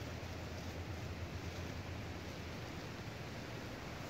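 Steady outdoor background noise: an even hiss with a constant low rumble underneath, and no distinct event.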